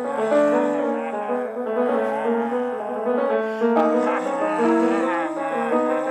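Solo grand piano playing freely improvised jazz: a dense, continuous stream of overlapping notes and chords.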